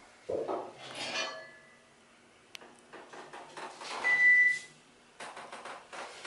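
A single high electronic beep lasting about half a second, about four seconds in, from the elevator's controls. It is preceded by a sharp click and by light rustling and knocking in the small steel cab.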